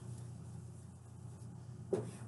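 Faint dry-erase marker drawing on a whiteboard over a steady low room hum, with one short, slightly louder sound near the end.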